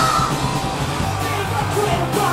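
A live rock band playing loud: electric guitar, bass and drums, with a yelled vocal over them.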